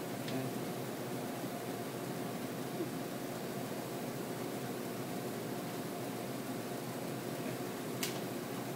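Steady room tone: an even hiss with a faint low hum from ventilation, unchanging throughout, with a couple of faint soft clicks.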